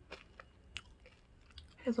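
A few faint, short clicks, three of them in the first second, over quiet room tone; speech begins again at the very end.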